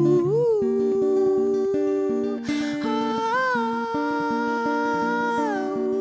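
A woman's voice singing a wordless melody, two long held notes with a small upward swoop at the start of each, over a fingerpicked acoustic guitar.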